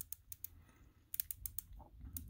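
The 60-click rotating dive bezel of a Glycine Combat Sub watch being turned by hand, ratcheting in quick, faint clicks: a short run, a pause of about half a second, then another run.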